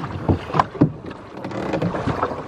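A dinghy being rowed: the oars knock in their oarlocks a few times in the first second, over a steady hiss of water and wind.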